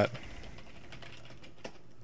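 Typing on a computer keyboard: a few faint key clicks over a steady background hiss.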